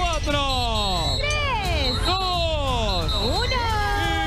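Excited voices shouting, several overlapping, each call falling in pitch: the last seconds of a countdown to the end of a timed round.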